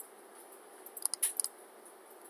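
A quick run of computer mouse clicks about a second in, over faint background hiss.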